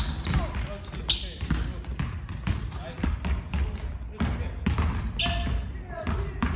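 Basketball dribbled hard and fast on a hardwood gym floor, a quick uneven run of sharp bounces as the player handles the ball against a defender, with brief squeaks of basketball shoes on the court.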